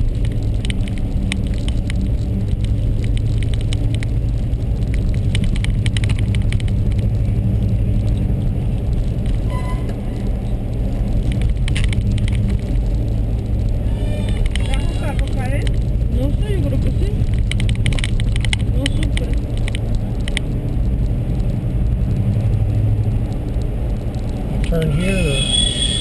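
A car driving, heard from inside the cabin: a steady low engine and road hum, with frequent small knocks and rattles.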